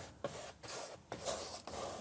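Flat paintbrush swishing paint across a canvas in a few short strokes.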